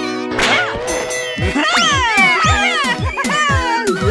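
A cartoon character's high, whiny voice wailing in repeated sweeps that rise and then fall in pitch, over cartoon background music with a run of short low falling tones.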